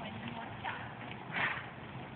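Hoofbeats of a horse moving on a sand arena: a few soft, irregular thuds over steady background noise, the loudest about one and a half seconds in.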